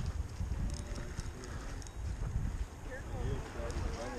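Wind rumbling on the microphone, with water splashing at the pier's edge where a hooked fish is thrashing beside a landing net, and a faint voice near the end.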